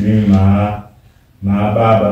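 A man's voice in a flat, chant-like monotone, in two phrases with a short break about a second in.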